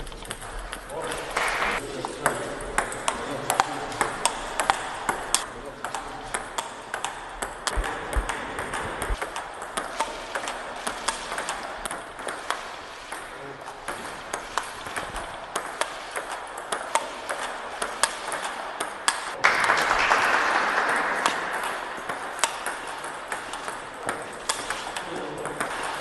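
Table tennis rally: the celluloid ball clicking off paddles and the table about twice a second, over voices in the background. About three-quarters of the way through, a louder burst of noise lasts about two seconds.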